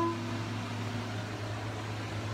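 The last held note of an electronic keyboard dying away in the first half second, then a steady low hum with faint hiss.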